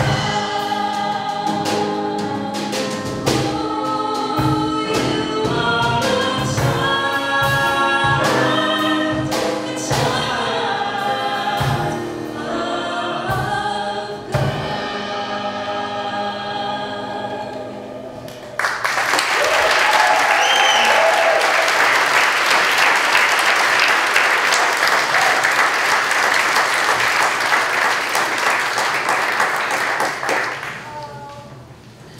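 Four-voice mixed vocal group singing a gospel-style hymn over instrumental accompaniment with a steady drum beat; the song ends about 18 seconds in. Audience applause follows, breaking in suddenly and lasting to the end.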